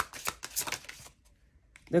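A deck of oracle cards being shuffled by hand: a quick run of crisp card-edge flicks lasting about a second, then stopping.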